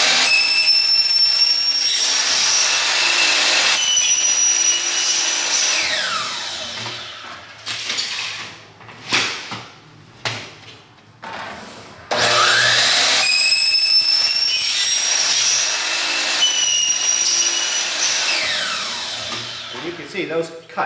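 DeWalt 12-inch sliding compound miter saw with a 96-tooth Diablo non-ferrous blade cutting through a soffit panel, its motor whining and then spinning down with a falling whine. After a few knocks the saw starts up again and makes a second cut, winding down near the end.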